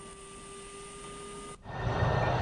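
A quiet, steady hum with a few thin, steady tones, cut off abruptly about one and a half seconds in. A louder rushing noise from a low-flying C-130 Hercules four-engine turboprop then swells in near the end.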